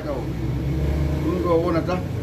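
A man's voice speaking briefly in the second half, over a steady low rumble that sounds like a motor vehicle running.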